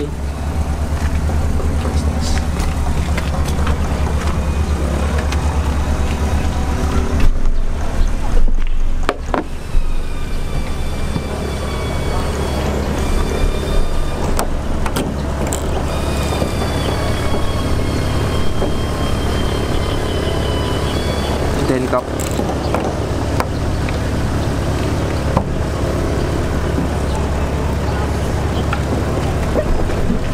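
A steady low engine drone with an even hum.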